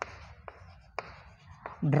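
Chalk writing on a blackboard: a soft scratching with a few sharp taps as the chalk strikes the board.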